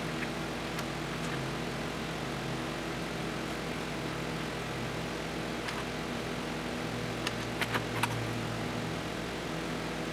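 Steady machine hum with a low pitched drone, with a few light clicks and taps of hand tools on metal bolts in an engine bay, clustered about seven to eight seconds in.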